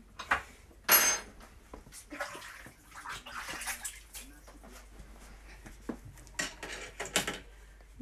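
Kitchen worktop clatter: scattered knocks and clinks of a knife and crockery, with a sharp ringing clink about a second in and a few seconds of hissing noise in the middle, then two sharp knocks near the end.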